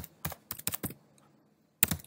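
Computer keyboard typing: a quick run of keystrokes in the first second, a pause, then a few more keys near the end.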